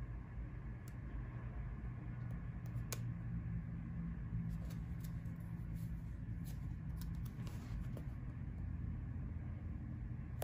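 Hands pressing and smoothing paper stickers onto a planner page, heard as faint scattered ticks and rustles of fingers and nails on paper, over a steady low background hum.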